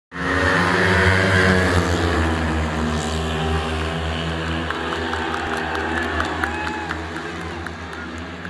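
Four speedway motorcycles, 500cc single-cylinder methanol-fuelled engines, racing in a pack. They are loudest at first and fade steadily as the pack moves away round the track.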